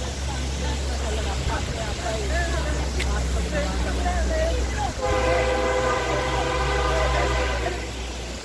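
A horn-like blast: a loud, steady chord held for nearly three seconds from about five seconds in, cutting off just before the end, over a steady low drone with voices heard earlier.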